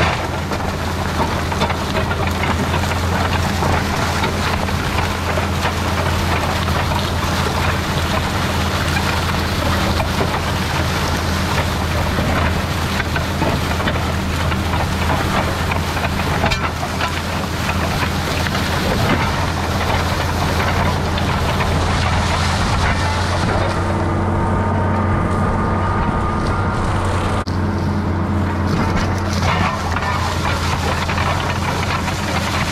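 Tractor engine running steadily under load while pulling a chisel plow, with the rushing, crumbling noise of soil and clods churned up by the plow's curved shanks. Near the end the rushing thins out and the engine's steady hum stands out more.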